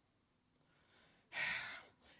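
A pause in recitation: near silence, then, a little past halfway, one audible breath close to the microphone lasting about half a second.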